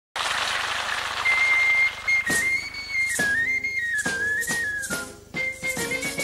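A high whistle melody that steps and slides between notes, blown on a small whistle held in cupped hands, over sharp percussion clicks that join about two seconds in. It opens with about a second of hiss, and lower instrument notes come in near the end.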